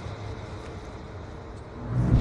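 A low, steady rumble with a faint hiss above it, swelling sharply near the end.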